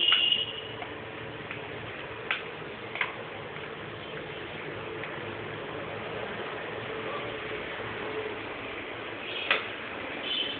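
Spoon stirring a thick sweet wheat paste in a glass bowl, with a few sharp clicks of the spoon against the glass: two close together a couple of seconds in and a louder one near the end, over a faint steady background hum.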